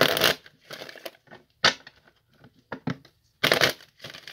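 A tarot deck being shuffled and handled by hand: a string of short rustling, slapping bursts of cards, loudest at the start and again near the end.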